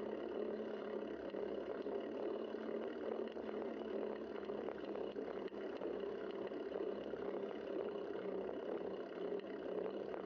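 Steady rush of wind and road noise on a bicycle-mounted camera's microphone as the bike rolls along pavement.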